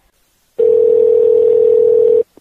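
A steady, single-pitched telephone line tone, loud, starting about half a second in and lasting just under two seconds.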